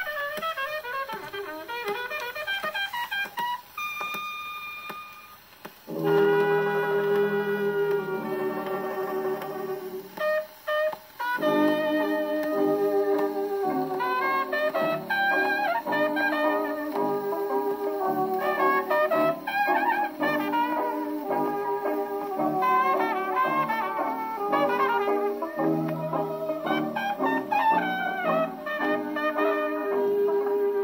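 A 1929 hot jazz band record, with trumpet and horns, on a shellac 78 playing through a 1927 Victor Orthophonic Credenza spring-motor acoustic phonograph with its lid open. The first few seconds are lighter and quieter, then about six seconds in the horns come in on a held chord and the full band plays on, with a brief drop just after ten seconds.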